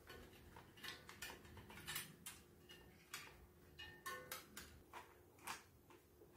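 Faint, irregular metallic clicks and small ringing taps from a cordless drill and its fittings being handled and fitted to a bicycle's rear frame, over a faint steady hum.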